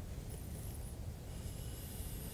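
Faint scraping of the D2 steel blade of an Andrew Jordan Hog knife shaving curls down a wooden stick, in two short strokes.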